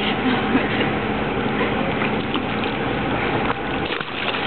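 Steady rushing of swimming-pool water with a low steady hum running underneath.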